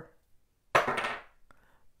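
A die tossed onto a wooden side table, clattering briefly about three-quarters of a second in, with a faint tick as it settles near the end.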